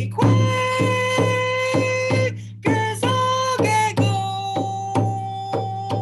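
A woman singing a gratitude song in long held notes over a hand drum struck at a steady beat of about two strokes a second.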